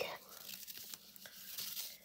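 Jute twine being pulled off its spool by hand: a faint, uneven rustling and scraping of rough fibre.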